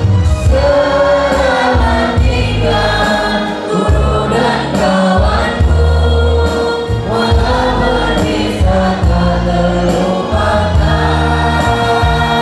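A girl and two boys singing together into microphones, their voices amplified, over musical accompaniment with a steady bass line.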